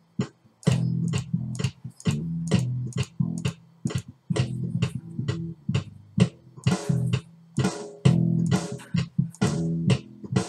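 A recorded bass guitar riff playing back, with sampled drum hits from a virtual kit tapped in over it, several a second and stronger near the end.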